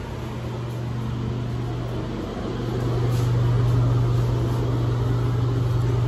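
Steady low hum of a room ventilation fan, growing louder a little over two seconds in.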